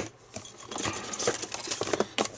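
Clear plastic blister packaging crinkling and crackling as it is handled, the crackles thickening from about halfway through.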